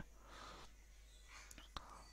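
Near silence, with faint breathy voice sounds and one small click near the end.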